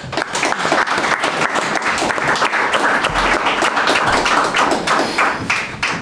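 Audience applause: many hands clapping in a dense, steady patter.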